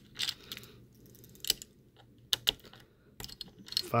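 Small screwdriver clicking against the spring-loaded heatsink screws of an MSI GT73VR laptop as they are loosened: scattered sharp metallic clicks, more of them near the end.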